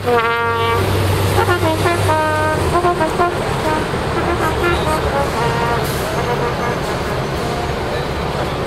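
A brass instrument, trumpet-like, plays a quick run of short notes that thins out after about three seconds. It is left as a busy outdoor crowd and street din with scattered voices.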